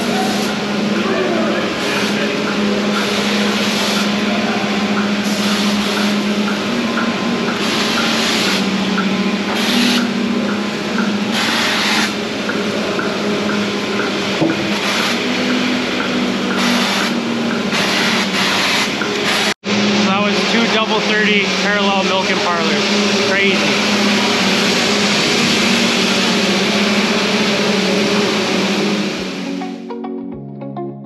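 Loud, steady hum and rush of dairy-barn machinery, the big ceiling ventilation fans and milking-parlour equipment, with a brief cut in the sound about twenty seconds in.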